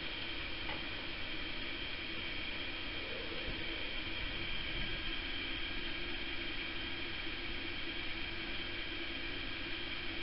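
Steady hiss with a faint, constant high whine and low hum. There are no distinct events.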